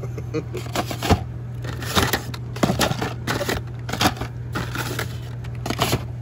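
Hot Wheels blister-pack cards being handled in a cardboard display: irregular plastic crinkling and clicking, with sharper clacks as the cards knock together.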